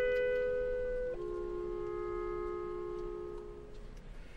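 Symphony orchestra holding sustained chords, moving to a lower chord about a second in, then fading away near the end.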